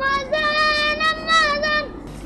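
A boy's voice holding one long high note, wavering slightly before it stops near the end.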